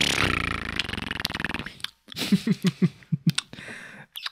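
A man's drawn-out, raspy gagging noise of disgust, acting out the taste of a foul-tasting energy drink, followed about two seconds in by a burst of short laughs.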